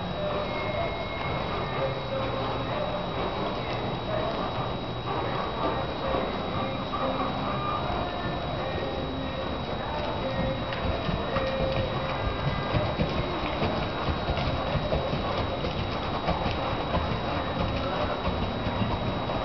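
Hoofbeats of a ridden American Quarter Horse gelding moving around on arena dirt. The footfalls become more distinct in the second half.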